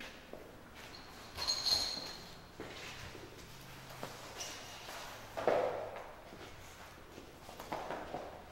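Canvas-jacketed fire hose being dragged and laid out across a concrete floor, mixed with footsteps. There are louder scuffs about one and a half, five and a half and nearly eight seconds in.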